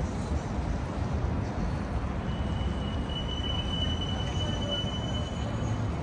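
Downtown street traffic rumbling steadily, with a thin high-pitched squeal or whine that comes in about two seconds in and holds for roughly three and a half seconds before cutting off.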